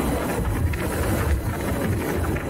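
Wind buffeting the microphone on a moving Harley-Davidson LiveWire electric motorcycle: a low, uneven rumble with road and tyre noise beneath it.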